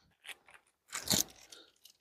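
Clear plastic fish bag crinkling briefly as it is handled and opened, a small crackle then a louder one about a second in.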